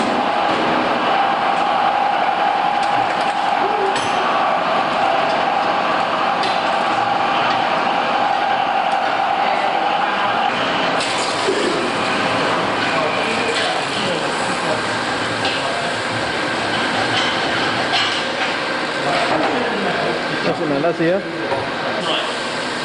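Gas welding torch flame hissing steadily as filler rod is melted onto a steel plate, with a steady hum that stops about ten seconds in.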